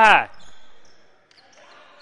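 Faint court sounds of a basketball game in a near-empty hall, with a single ball bounce about a second and a bit in.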